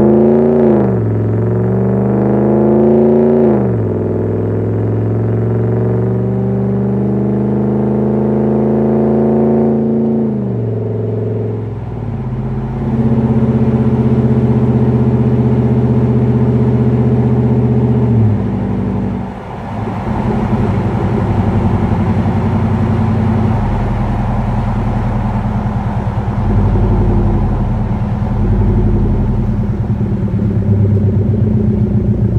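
Ram 1500's HEMI V8 running through a KM high-flow sports muffler as the truck accelerates: the exhaust note climbs, drops back at each of about three upshifts, then settles into a steady cruising burble.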